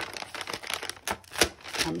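Paper packaging rustling and crinkling as a small paper bag and its folded header card are handled and pulled open, with a few sharp crackles.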